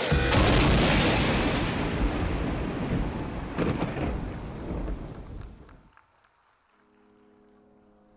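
Audience applause and cheering as the dance music stops, fading away over about five seconds. Near the end a soft, held music chord begins faintly.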